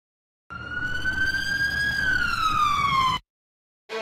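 Emergency vehicle siren sound effect: one long wail that rises slowly and then falls, over a low rumble, starting about half a second in and cutting off suddenly after about three seconds. Violin music begins at the very end.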